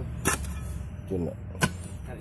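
A metal hand tool jabbed into hard soil, giving two sharp knocks about a second and a half apart, over a low steady rumble.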